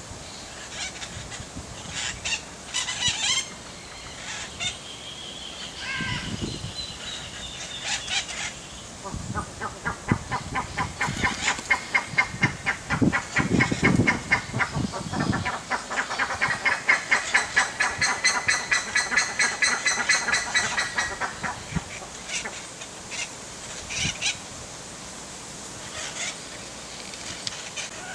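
A bird calling in a long run of rapid, evenly repeated notes, several a second, that starts about nine seconds in and stops about twenty-one seconds in. Shorter bird calls come in the first few seconds.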